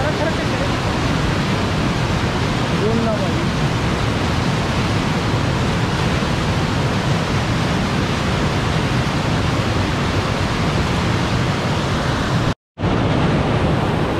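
Fast mountain river rushing over boulders in white-water rapids: a loud, steady roar of water. The sound cuts out for a moment near the end, then resumes.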